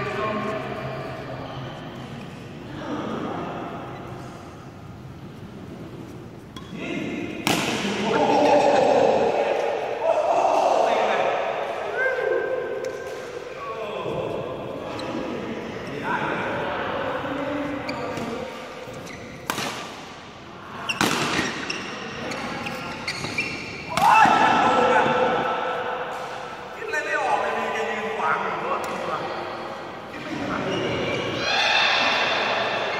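Badminton players talking and calling out to each other, with a few sharp cracks of rackets hitting the shuttlecock scattered through.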